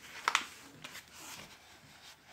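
A paperback book being handled, its pages rustling, with a short sharp click about a third of a second in.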